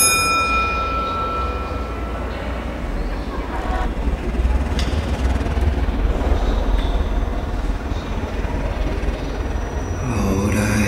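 A single struck metallic ring that fades over about two seconds, followed by a steady low rumble.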